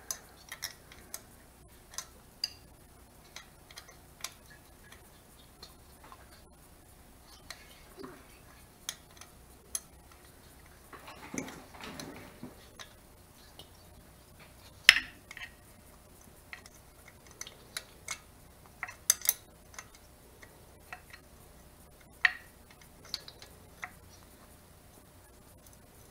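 Irregular small metallic clicks and clinks of a 10 mm wrench and small nuts or bolts being worked loose by hand on an air-cooled VW engine, the loudest clink about fifteen seconds in.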